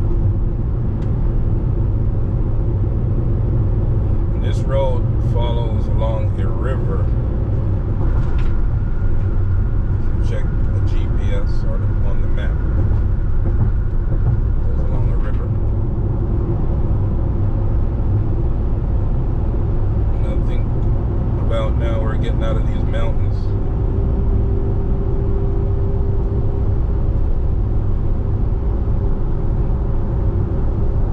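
Steady low rumble of a car's tyres and engine cruising at highway speed, heard from inside the moving car.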